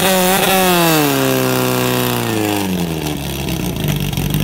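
Portable fire pump engine running at high revs, then falling in pitch over about two seconds and settling to a lower, steady speed as it is throttled back.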